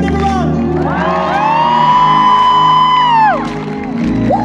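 Live pop band playing at an outdoor concert, heard from within the crowd. Over it, a loud high whoop from a concertgoer close by is held steady for about two seconds before falling away.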